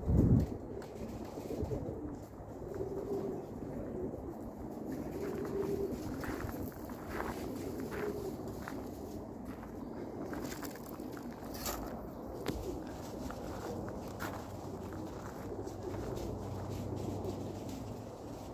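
Domestic pigeons cooing, short low coos repeated every second or two, after a brief thump at the very start.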